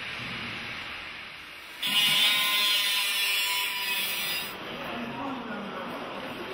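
Construction-site ambience with distant voices; about two seconds in, a power tool starts with a high whine and runs for about two and a half seconds before stopping.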